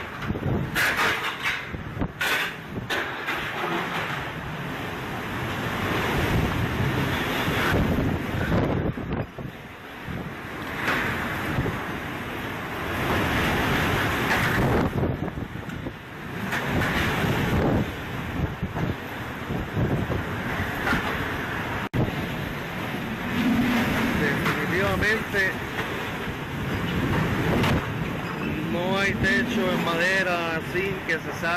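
Hurricane winds gusting outside a building with driving rain, surging and easing every few seconds, with wind buffeting a phone's microphone.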